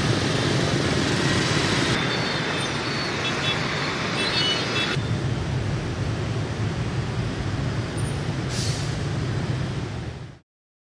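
Jammed city traffic: many scooter and bus engines running together in a steady, dense rumble, with a few short high squeaks in the middle.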